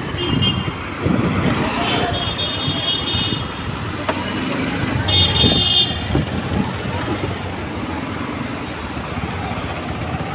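Busy street traffic: engines and tyre noise from passing cars and auto-rickshaws, with vehicle horns tooting briefly near the start, for about a second between two and three seconds in, and again around five to six seconds.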